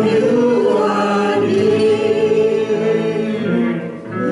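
A church worship team singing together, several voices holding long notes in harmony; the phrase tails off near the end.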